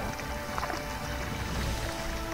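Background music with soft, sustained notes.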